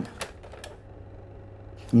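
A pause in a man's speech: quiet room tone with a faint steady hum and a couple of short clicks in the first moments, before his voice resumes at the very end.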